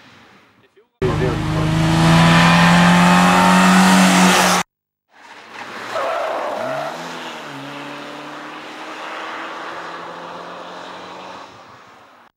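Small hatchback race car's engine held at high revs close by, loud and steady, then cut off suddenly. After a short gap a second run is heard: the engine pitch briefly rises and falls, then holds steady and fades near the end.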